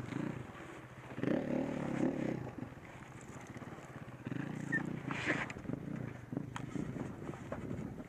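KTM 690 Enduro R's single-cylinder four-stroke engine at low revs, given short bursts of throttle about a second in and again around four to five seconds in. A few sharp knocks come through in the second half as the bike crawls over rocks.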